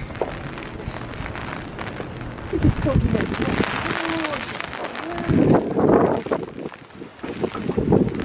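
Wind buffeting the microphone, with a few short, soft voice sounds in the middle and a louder one about two-thirds of the way through.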